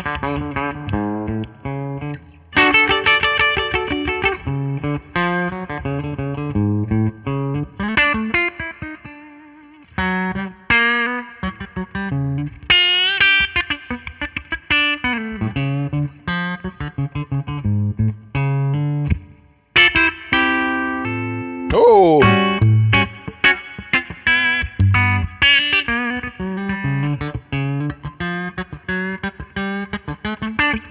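Gibson Memphis ES-Les Paul semi-hollow electric guitar, on its PAF-style bridge humbucker through an amp, playing a run of picked single-note lines and chords. A quick sliding drop in pitch comes a little past two-thirds of the way through.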